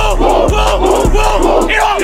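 Football players' pregame huddle chant: one player shouting and the team yelling back in rhythmic shouts, over music with a steady beat.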